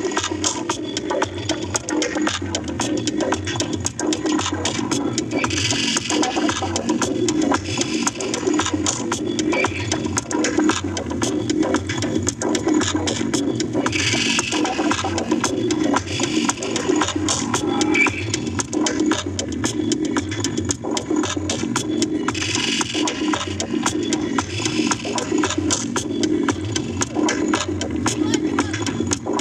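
Live electronic music from a laptop played through PA speakers: a dense, crackling, machine-like texture over a steady low drone, with swells of high hiss about every eight seconds.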